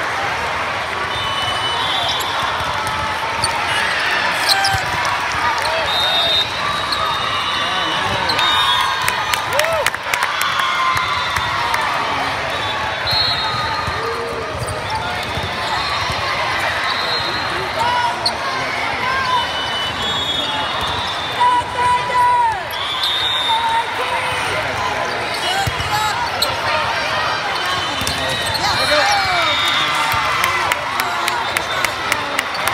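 Hubbub of a large volleyball hall: many overlapping voices of players and spectators, volleyballs being hit and bouncing, and several short whistle blasts from referees on the courts around.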